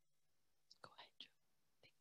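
Near silence, broken about a second in by a brief, faint whisper of a few syllables.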